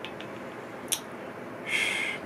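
A sharp click about a second in, then a short sniff through the nose near the end as a spoonful of buffalo sauce is smelled.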